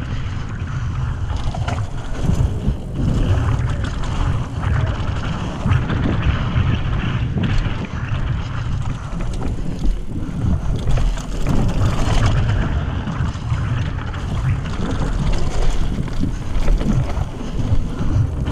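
Mountain bike descending a dirt trail at speed: wind buffeting the camera microphone in a heavy, steady rumble, with the tyres running over dirt and frequent knocks and rattles from the bike over bumps.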